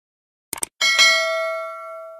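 Subscribe-animation sound effect: a few quick mouse clicks about half a second in, then a bright notification-bell ding that rings on with several steady tones and slowly fades.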